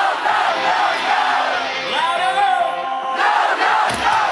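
A large rock-festival crowd singing along loudly in unison. The band's bass and drums mostly drop out, so the massed voices carry the song.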